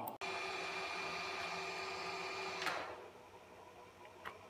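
Steady whir of running network switches' cooling fans, with a few faint steady tones in it, stopping abruptly with a click about two and a half seconds in.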